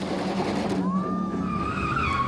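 Car doing a burnout: an engine held at high revs under a rushing tyre noise, then a tyre squeal that rises in pitch about a second in and holds steady.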